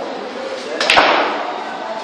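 Sinuca shot: the cue strikes the cue ball about a second in, a sharp click followed at once by a louder crack as the balls collide, ringing out briefly in the room.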